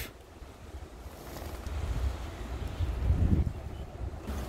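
Wind buffeting the microphone: a low rumble that swells and eases, strongest a little after three seconds in.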